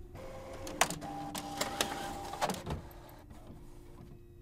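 A printer running: a motor whirring with a steady tone, broken by a series of sharp mechanical clicks and knocks, going quieter near the end.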